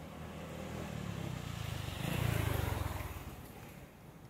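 A motor vehicle passing by: its engine grows louder to a peak a little over two seconds in, then fades away.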